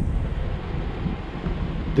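Low, steady rumble of a Hummer H3 driving slowly along a rocky dirt mountain trail: engine and tyre noise.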